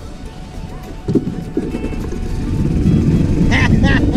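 Golf cart pulling away over grass: a steady low rumble that grows louder over the last second and a half, with a single knock about a second in. Laughter starts near the end.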